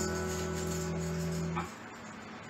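The final chord of a song on a hollow-body electric guitar rings out and fades, then is damped short about one and a half seconds in.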